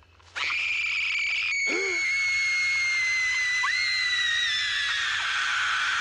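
A boy screaming: one long, high scream that starts suddenly about a third of a second in, holds for over five seconds and slowly falls in pitch.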